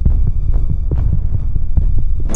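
Loud, low throbbing rumble buffeting the camera's microphone, with soft thuds about every half second as the camera is swung around.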